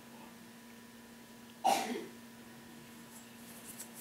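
A single short cough about one and a half seconds in, over a faint steady hum. A few faint light clicks near the end as gloved fingers turn a silver dollar over.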